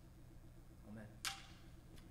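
Near-quiet room tone with a softly spoken "Amen", followed just over a second in by one short rustling whoosh.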